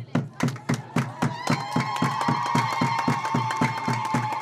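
A crowd clapping in a fast, even rhythm, about four claps a second. From about a second and a half in, high, held cries from the crowd join the clapping.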